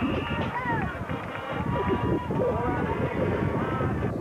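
Football crowd shouting and cheering, many raised voices overlapping with no single voice standing out.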